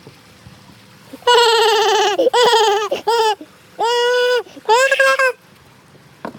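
A high-pitched voice wailing in five drawn-out notes, starting about a second in: the first note wavers in pitch, the second slides downward, and the last two are held level.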